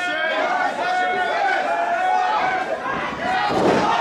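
Wrestling crowd yelling and chanting, many voices overlapping, with a thud about three and a half seconds in.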